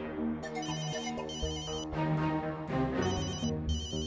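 Mobile phone ringing with a melodic electronic ringtone: high chirpy tones in short repeated bursts, each about half a second long, over a running tune.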